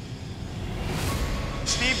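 Red-hot steel blade plunged into a quench barrel: a hiss with a low rumble that builds from about half a second in and peaks near the middle.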